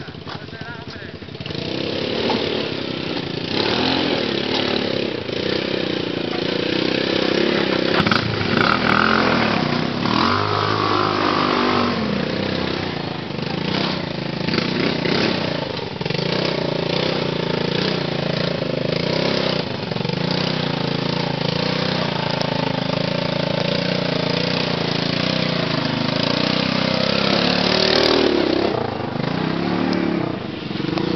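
Quad bike (ATV) engines running and revving on a rough rocky trail. The sound grows louder about a second and a half in as the quads come close, and the engine pitch rises and falls with the throttle.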